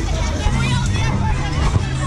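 Funfair ride in motion amid a dense, loud mix of fairground music with a steady bass line, a mechanical rumble and riders' and onlookers' voices.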